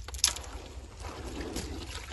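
Muddy water sloshing in a gold pan as it is swirled, with one sharp splash just after it begins.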